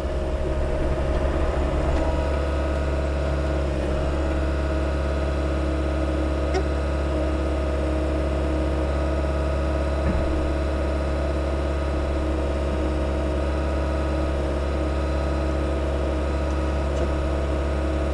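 Mecalac 6MCR compact tracked excavator's diesel engine running at a steady, unchanging pitch while the machine works slowly on the dirt in loader mode.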